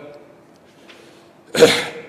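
A man coughs once, a single short, sharp cough close to a lectern microphone, about one and a half seconds in.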